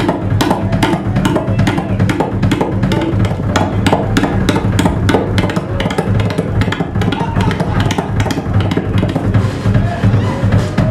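Live drum kit solo: a fast, unbroken run of strokes on the drums and cymbals.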